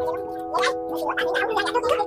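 Background music with sustained, held notes that change pitch from note to note.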